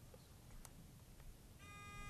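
Near silence, then about one and a half seconds in a quiz-show buzzer sounds a short, steady electronic tone as a contestant buzzes in to answer.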